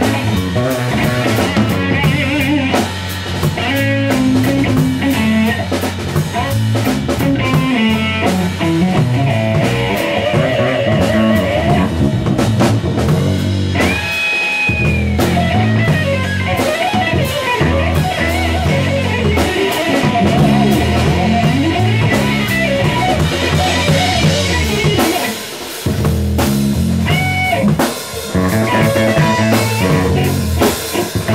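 Live band jamming on electric guitar, electric bass and a Fibes drum kit, a steady groove with no singing. About halfway through, one high note is held for about a second, and the playing briefly drops out twice near the end.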